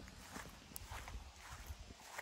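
Faint footsteps of a person walking on grass, a soft step every half second or so.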